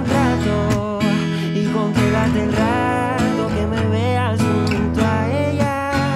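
Acoustic guitar strummed softly through the chorus chords, moving from E toward F#7, with a man singing the melody in Spanish over it.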